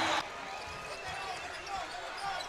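Arena sound at a basketball game: loud crowd noise cuts off sharply just after the start, leaving a quieter court with a basketball bouncing on the hardwood and faint voices.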